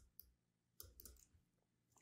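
Near silence with a few faint, sharp computer mouse clicks, near the start and again about a second in.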